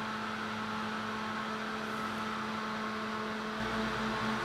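Small square electric fan running steadily at about 2,600 RPM: a constant whir with a steady low hum. A low rumble joins in a little before the end.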